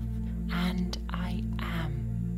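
Soft ambient music with steady sustained low tones, under a quiet whispered voice.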